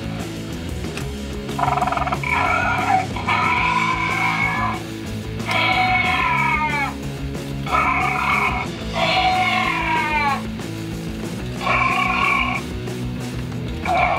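Electronic dinosaur screech sound effects from a toy velociraptor, played as its tail is wagged. About six calls come roughly every two seconds, some ending in a falling pitch, over steady background music.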